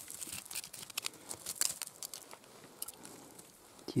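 Loose sand and gravel crumbling and trickling down as a sandy bank is scraped with a hand-held tool: a scatter of small ticks and crackles, busiest in the first three seconds and thinning out toward the end.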